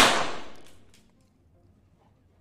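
Reverberation of a burst of .22 sport pistol shots dying away in an indoor shooting hall over about a second, with two faint sharp cracks just under a second in.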